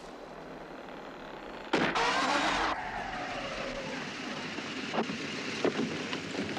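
A car crossing an old wooden bridge that creaks under its weight. A sudden loud rush comes in about two seconds in and lasts about a second, followed by a steady hiss and a few sharp clicks.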